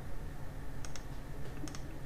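Light clicking at a computer: two quick pairs of clicks, about a second in and again near the end, over faint room hiss.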